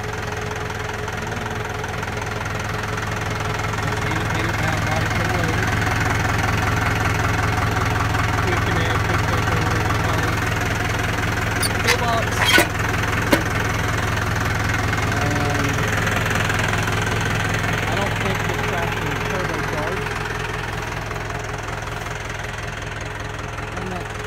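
Massey Ferguson 573 tractor's four-cylinder diesel engine idling steadily, louder towards the middle. About twelve seconds in, a few sharp metallic clanks as a steel toolbox lid is opened.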